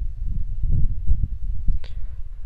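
A low, uneven rumble of background noise on the recording microphone, with a brief hiss near the end.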